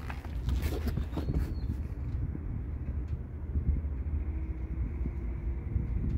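Low, steady outdoor rumble, with a few light knocks and rustles in the first second or so as the phone is moved about.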